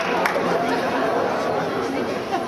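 Crowd of spectators chattering, many voices talking at once, with a few last claps of applause right at the start.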